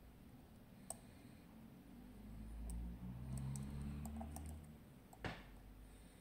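Faint small metallic clicks and ticks of a lock pick working the wafers of a Miwa DS wafer lock cylinder, with a sharp click about a second in and a louder click near the end, over a low rumble in the middle.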